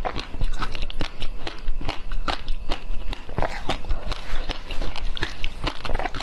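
Close-miked eating sounds: a mouth biting and chewing a domed jelly sweet, a loud, dense run of irregular sharp clicks and crunches several times a second.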